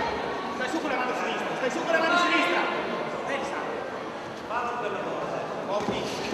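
Voices calling out in a large hall during an amateur boxing bout, overlapping over a steady crowd background, with a few sharper shouts about two seconds in and again near the five-second mark.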